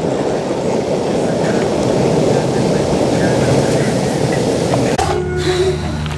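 Skateboard wheels rolling over an asphalt path: a steady, coarse, low rumble that cuts off abruptly about five seconds in.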